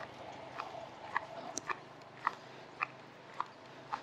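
Faint footsteps walking down a concrete path: a regular light tap about every half second, over a low outdoor hiss.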